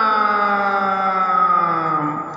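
A man's voice holding one long chanted note that slides slowly down in pitch.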